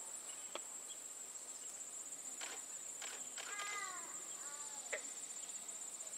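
Steady, high-pitched pulsing trill of an insect chorus, such as summer crickets or katydids. It carries a few faint clicks, and two short falling calls come a little past halfway.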